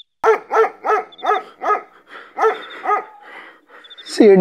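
A dog barking, seven short barks in quick succession, about three a second at first and then slower, with a pause before the end.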